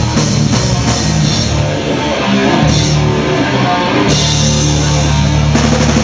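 Hardcore punk band playing live: distorted electric guitar, bass and a drum kit. The cymbals drop away briefly about two seconds in, and the full band comes back in about four seconds in.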